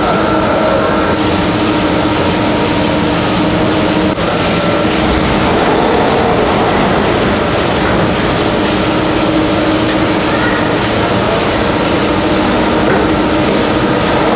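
Station machinery of a 1979 Montaz Mautino six-seat detachable gondola running: the tyre conveyor wheels, rails and bullwheel carry cabins through the station with a loud, steady mechanical running noise and a humming tone.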